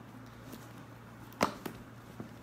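Cardboard retail box being opened by hand: one sharp snap about one and a half seconds in, followed quickly by a smaller click.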